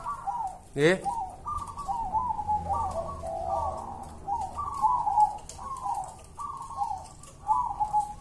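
Caged zebra doves (perkutut) cooing: a steady run of short, rippling notes repeated about every half second.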